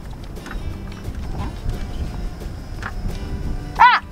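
Low whir of a truck's power seat motor as the driver's seat is adjusted, under background music. A short, loud rising-and-falling cry comes near the end.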